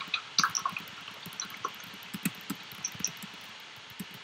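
Faint, irregular clicking of a computer keyboard and mouse heard over a video-call microphone, a quick cluster of clicks near the start and then sparser single clicks.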